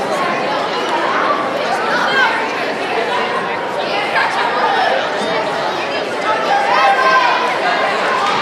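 Crowd chatter: many adults and children talking at once in a large gymnasium, a steady hubbub of overlapping voices with no single speaker standing out.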